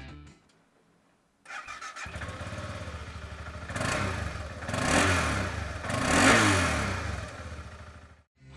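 A 2015 BMW G650GS's 652cc single-cylinder engine starting up about a second and a half in, running with an even pulsing beat, then revved three times.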